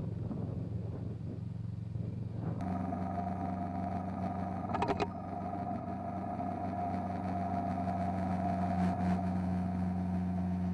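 Motorcycle engine running steadily at cruising speed, at first under wind rushing over the microphone; about two and a half seconds in the sound switches abruptly to a steady engine drone with a clear hum. A short burst of clicks comes about halfway through.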